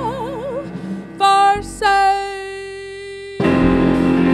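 Live jazz: a female singer ends a held note with wide vibrato, then two piano chords are struck and ring out, fading slowly. About three and a half seconds in, the piano, bass and drums come back in together.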